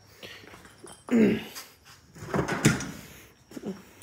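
Someone rummaging and moving things about, with scattered knocks and handling noise and a short grunt-like vocal sound about a second in.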